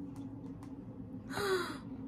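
A woman's short breathy gasp or exhale of amusement about one and a half seconds in, over a faint steady low hum.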